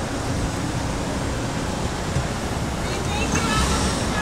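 Steady street traffic noise with a low rumble, with faint indistinct voices coming in near the end.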